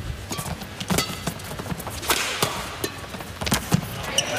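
Badminton rally: racket strings hitting the shuttlecock several times in an uneven rhythm, with players' footsteps on the court. The sharpest hit comes near the end.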